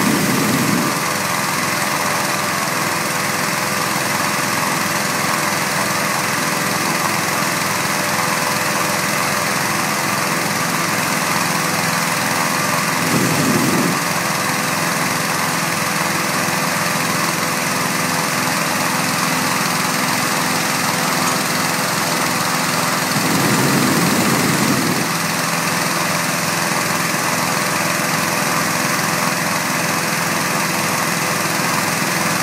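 Gasoline-engine inflator fan running steadily at high speed, blowing cold air into a hot air balloon envelope during cold inflation. A few brief low swells come through at the start, about halfway and again about three-quarters of the way through.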